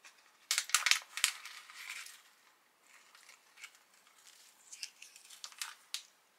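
A foil tea pouch being opened: a burst of loud, sharp crinkling about half a second in, then quieter crinkling and rustling of the bag.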